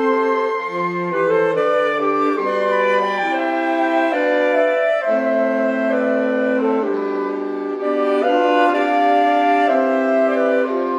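Saxophone quintet playing a slow, sustained passage in close harmony, the held chords moving from one to the next about once a second.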